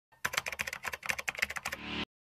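Keyboard-typing sound effect: a quick run of key clicks, about a dozen a second, ending in a short swelling sound that cuts off suddenly.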